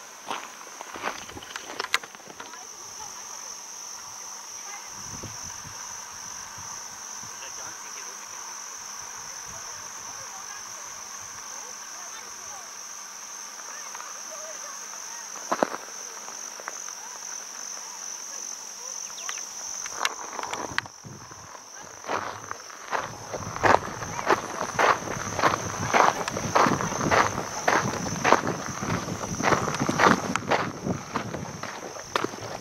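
Steady high-pitched insect chorus with a slight pulse, fading out for a moment about two-thirds of the way through. In the last several seconds, footsteps crunch along a sandy dirt track at about two steps a second.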